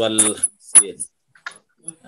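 A man's voice reciting the opening Arabic praise over a video call, the audio breaking up: a few syllables, then abrupt cut-outs to silence with faint clicks, and a crackly high hiss on the voice.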